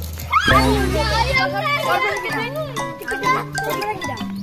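Children's excited voices over background music with held low bass notes.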